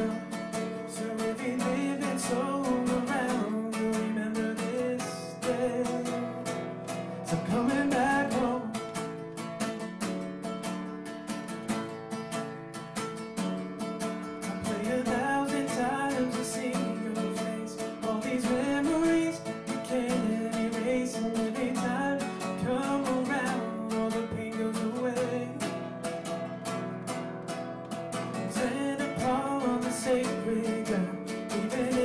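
A man singing in phrases to his own acoustic guitar, strummed steadily.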